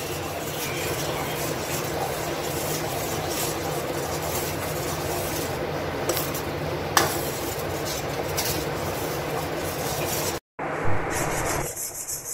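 Spatula stirring and scraping steadily across the bottom of a steel kadhai of melting, foaming butter as it cooks down to ghee. The stirring is kept up without pause because butter sticks to a steel pan. The sound cuts out for a moment near the end.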